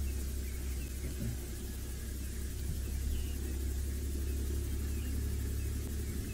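Safari game-drive vehicle's engine idling: a steady low rumble.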